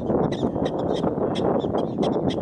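Prairie dog barking, a quick run of short, high calls about five or six a second, over low wind noise on the microphone.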